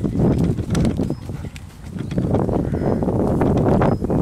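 Hoofbeats of a chestnut horse cantering on a loose, granular arena surface, a run of repeated dull thuds with a brief lull about halfway through.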